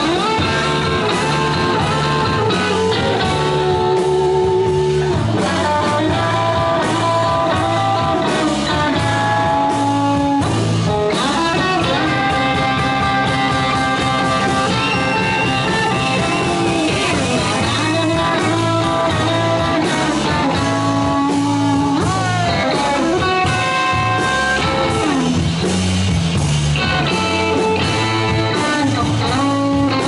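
Live instrumental rock band playing, led by an orange hollow-body electric guitar with bent and sliding notes over a steady beat.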